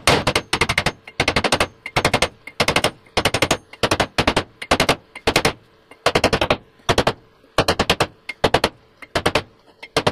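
Soft-faced mallet tapping repeatedly on the top of a metal bearing tube, driving a ball bearing into the tube against a heavy brass bar. The strikes come in quick clusters of several sharp taps each, about one cluster every half second, with the tube turned between blows so the bearing walks in evenly.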